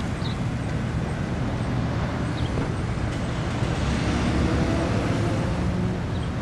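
Road traffic noise: a steady low rumble that swells a little about four seconds in, as a vehicle passes.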